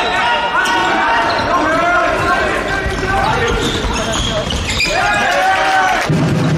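Handball game sounds in a sports hall: the ball bouncing on the hard floor, players' footsteps and voices calling, all echoing in the hall.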